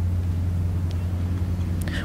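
A pause in speech, filled by a steady low hum of room background.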